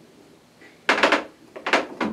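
Two short clusters of sharp knocks, about a second in and near the end, from a kitchen knife cutting a lemon and knocking against the table.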